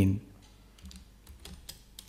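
Several light keystrokes on a computer keyboard, typing in a value and pressing Enter.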